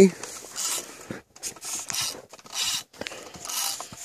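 Irregular rubbing and scraping handling noises with a few scattered clicks, coming and going in short bursts.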